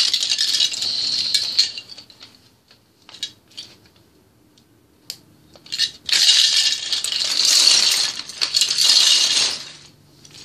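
A hand rummaging through a loose pile of small plastic toy bricks, the bricks clattering against each other. There are two spells of clattering: one at the start lasting about two seconds, and a longer one from about six seconds in until near the end, with a few scattered clicks in between.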